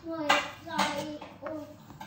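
A person's voice making a few short wordless vocal sounds.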